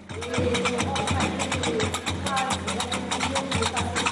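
Qraqeb (large iron castanets) clattering in a fast, continuous rhythm over a low drum beat, with voices singing along.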